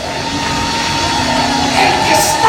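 Live band music: a sustained chord held steadily, with no singing over it.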